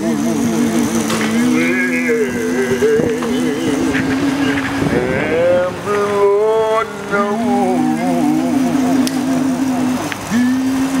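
Two men singing a gospel song unaccompanied in harmony: one voice holds a long steady note while the other sings a wavering, ornamented line above it.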